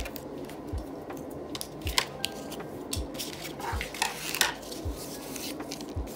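Corrugated cardboard and paper pieces being handled on a craft mat: light rustles and sharp little clicks, with a soft low thud about once a second.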